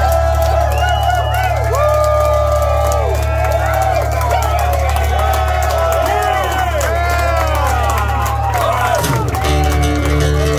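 A live crowd whooping and yelling over a steady low drone held from the stage. Near the end, acoustic guitar strumming starts up as the band comes back into the song.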